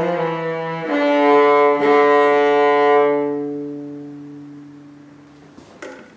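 Solo cello played with the bow, closing a piece: a new note comes in about a second in, then a long final note is held and slowly fades away. A short knock follows near the end.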